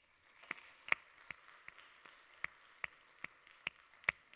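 Light applause from a small audience: a steady patter of clapping, with a dozen or so individual claps standing out sharply.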